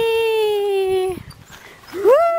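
Playground swing's metal chain hangers squeaking with the swing's motion: one long squeal that slides slightly down in pitch and stops a little over a second in, with the next squeal starting just at the end, in a regular rhythm.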